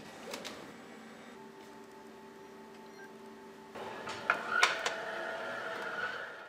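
Pallet conveyor of an automated production line running with a steady hum, then louder mechanical running with several sharp clicks from about four seconds in, as the reworked carrier is sent back into the production cycle.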